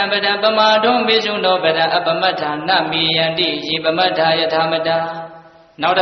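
A Buddhist monk's voice chanting in a drawn-out monotone with long held notes. It breaks off briefly near the end and starts again.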